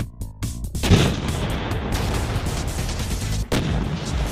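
Tank cannon firing sound effect: a loud blast about a second in, followed by a long rumble, with another blast near the end, over background music.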